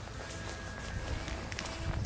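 Footsteps on a gravel and pebble shore, with a low steady rumble underneath.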